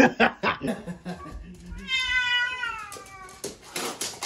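A house cat meowing once, a drawn-out call starting about two seconds in that slides slightly down in pitch.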